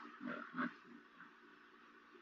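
A brief faint murmur from a man's voice in the first half-second or so, then near silence.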